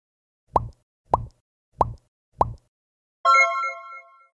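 Cartoon sound effects for an animated intro: four quick rising 'bloop' pops, evenly spaced about 0.6 s apart, then a bright chime chord a little after three seconds that rings and fades.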